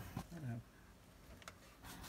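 A brief murmured voice, then quiet kitchen room tone with a couple of faint ticks.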